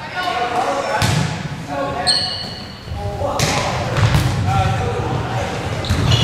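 Volleyball rally in a gym: players and spectators calling out, and the ball being struck several times with sharp hits that echo in the hall. A brief high-pitched tone sounds about two seconds in.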